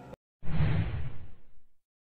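A whoosh transition sound effect: a single rush of noise that starts sharply about half a second in and fades away over about a second.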